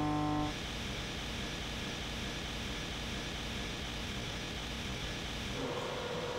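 Background guitar music ends about half a second in, leaving the steady noise of workshop machinery running. Near the end a steady mid-pitched hum joins in.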